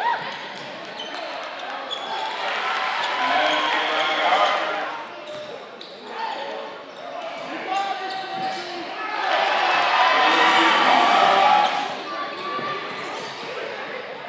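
Live game sound of a basketball game in a gymnasium: the ball bouncing on the hardwood amid players' and spectators' voices, with two louder swells of crowd noise, one near the start and a longer one about nine seconds in.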